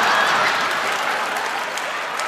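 Audience applauding and laughing at a punchline, loudest at the start and slowly fading.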